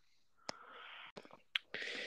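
Two breathy, unvoiced sounds from a person close to the microphone, like an exhale or a whisper. The second, near the end, is louder. A few faint clicks fall between them.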